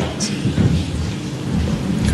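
Audience applauding, with a low rumble underneath.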